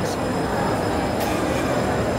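Steady, fairly loud background noise of a busy indoor shopping mall: the hum of crowds and foot traffic, with a short click about a second in.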